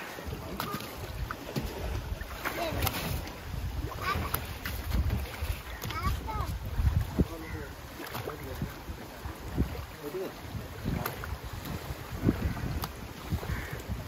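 Wind rumbling on the microphone, with scattered knocks as tilapia are handled from a wooden canoe into a plastic basket, and faint voices in the background.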